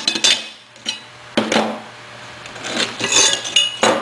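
Cut steel backhoe linkage plates being handled and set down on a workbench: a handful of sharp metal clinks and clanks, with a quick cluster of them near the end.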